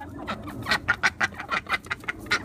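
Chickens clucking in a quick run of short calls, several a second.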